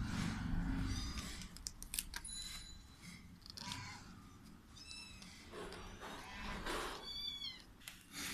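Month-old kittens mewing: several short, high-pitched mews, the last near the end a little longer and falling in pitch. A few sharp clicks come a second or two in.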